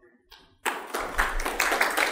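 Audience applause breaking out suddenly about half a second in: many hands clapping densely and loudly at the close of a lecture.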